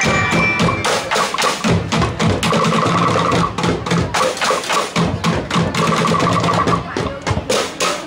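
Drumblek percussion ensemble beating large plastic barrels and cans in a fast, dense rhythm, with deep thuds from the barrels under the sharper strokes. The beats become more spaced out in the last second.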